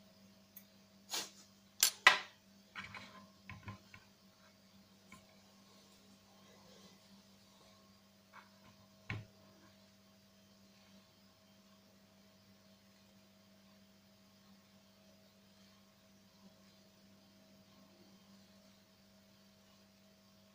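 A few sharp clicks of wet gravel and small stones knocked about by fingers in a plastic gold pan, two loudest ones about two seconds in and one more near the middle. Between them only a faint steady hum.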